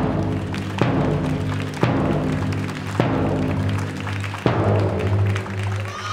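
Large bass drum of a school cheering squad struck slowly, about once a second and a little slower near the end, each beat sharp and then ringing low between the strokes.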